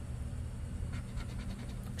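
A scratcher coin rubbing the latex coating off a scratch-off lottery ticket in a few faint short strokes in the second half, over a steady low hum.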